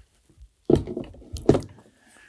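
A Mackie Thump 212 powered PA speaker being mounted on a tripod speaker stand: two knocks, the second sharper, about three-quarters of a second apart, as its pole socket lands on the stand's pole and settles.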